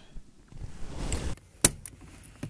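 A car's handbrake lever being taken hold of and released: a sharp click of the lever mechanism about three-quarters of the way in, with a softer click just after.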